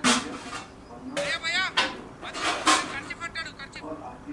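Men's voices shouting and calling out across a cricket field, beginning with a sudden loud cry. Several high, wavering shouts follow over the next few seconds.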